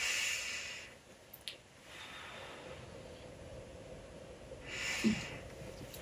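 A woman breathing out slowly and audibly, fading over the first second, then a second breath out about five seconds in: a deep calming breath taken just before starting a massage.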